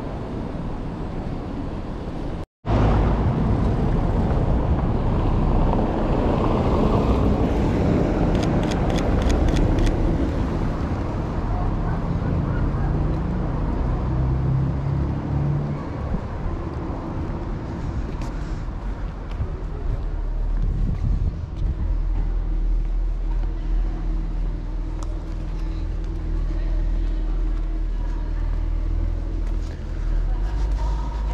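Outdoor city street ambience: a steady wash of traffic and passers-by, with a brief drop to silence about two and a half seconds in.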